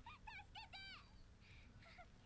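Faint, high-pitched cries of child characters from the subtitled anime playing quietly: a few short, wavering calls in the first second.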